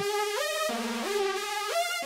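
Roland JUNO-60 software synthesizer playing a single-line lead of a few held notes stepping up and down. Its tone shimmers from heavy pulse-width modulation driven by the LFO, whose rate slider is being turned down.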